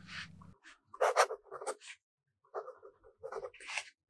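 Fountain pen nib scratching across dot-grid notebook paper while writing by hand: a few separate short pen strokes, starting about a second in.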